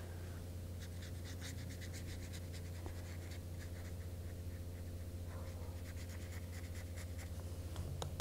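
A small round watercolor brush scratching and dabbing lightly on paper, heard as clusters of faint short scratchy ticks, over a steady low hum.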